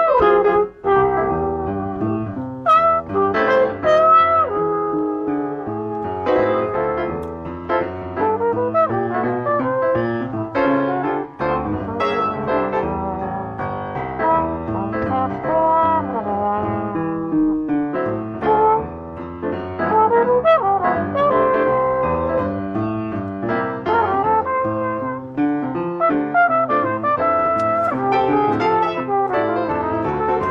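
A jazz duo of upright piano and trumpet playing a standard, the piano comping chords under the horn line.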